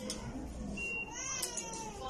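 A high-pitched wavering cry that rises and then falls about a second in, over a low steady background hum.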